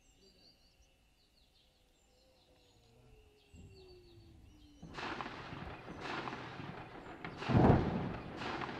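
Faint bird chirps at first; then, about five seconds in, a tank's diesel engine and tracks as it moves close past, a loud rough noise with its loudest surge near the end.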